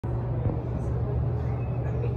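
Steady low hum of room ambience, with faint voices in the background.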